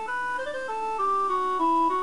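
Electronic keyboard backing music with an organ-like tone plays a short instrumental melody of held notes. The notes step down in pitch and then back up, over steady chords.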